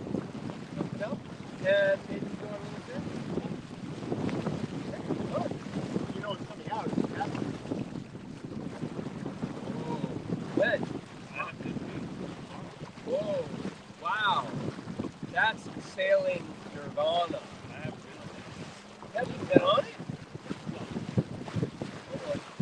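Steady wind on the microphone and lake water rushing along the hull of a small sailboat under sail, with short snatches of voices now and then.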